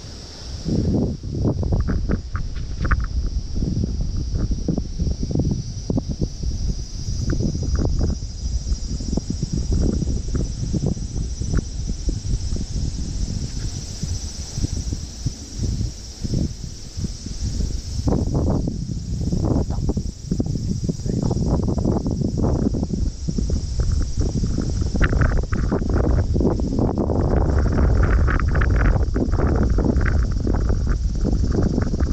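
Gusty wind rumbling on the microphone in irregular gusts, heavier near the end, over a steady high-pitched insect drone.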